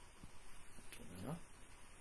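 A single faint, short vocal sound about a second in, its pitch curving up and down, against quiet room tone.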